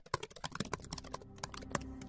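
Rapid, irregular computer-keyboard typing clicks, with faint steady low tones building underneath.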